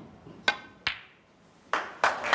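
Snooker balls clicking sharply twice, a fraction of a second apart: the cue tip striking the cue ball, then the cue ball striking a red, which is potted. Audience applause begins near the end.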